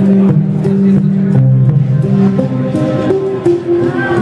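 Live instrumental music: violin and upright bass playing held notes, the bass line stepping down and back up, over light drum-kit and cymbal strokes.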